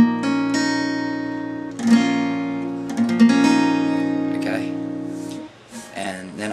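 Acoustic guitar, tuned a half step down, picking the notes of a B minor shape with an open high E one string at a time and letting them ring together. Fresh plucks come at the start, about two seconds in and about three seconds in, and the ringing chord dies away shortly before the end.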